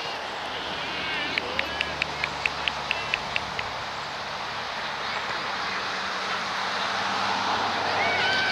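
Open-air ambience of a soccer match: distant voices of players and spectators calling across the field. About a second in comes a quick run of about ten short, high chirps.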